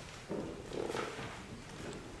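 Congregation sitting down in wooden church pews: a low swell of rustling and shuffling in the first second, with a few faint knocks.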